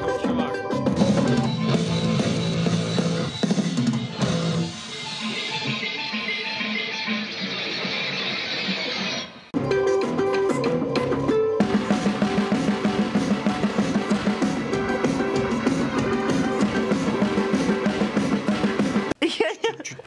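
Band music with a drum kit playing, snare hits prominent. The music cuts off abruptly about nine and a half seconds in, starts again with a steady beat, and stops just before the end.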